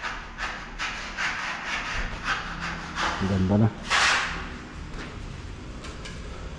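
Repeated rasping strokes of hand work on a surface, about two or three a second, stopping about two and a half seconds in. One brief, louder rasp follows about four seconds in.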